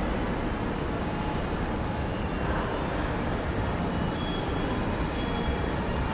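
Steady indoor shopping-mall ambience: a constant wash of low rumble and hiss under the glass roof. A faint high tone comes and goes about once a second in the second half.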